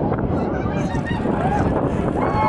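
Distant propeller race plane's piston engine droning in a steady noisy rush as it flies low over the water toward the pylons.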